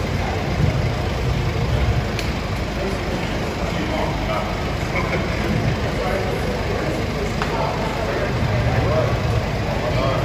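Indistinct talk from a small group of people over a steady low rumble, in a reverberant concrete tunnel.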